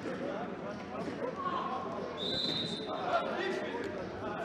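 Indoor football in a sports hall: players' shouts and the ball's kicks and bounces echoing off the hard floor and walls, with a short, high referee's whistle blast about two seconds in.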